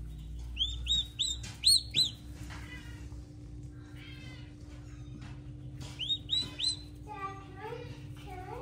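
Newly hatched turkey poult peeping: a quick run of about seven high, arching peeps in the first two seconds, then three or four more near six seconds in.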